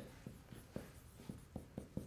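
Marker writing on a classroom whiteboard: faint, irregular taps and strokes as the words are written.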